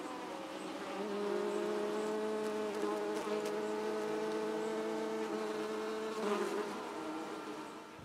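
A flying insect buzzing: a steady hum with overtones that swells in over the first second and fades away over the last two seconds.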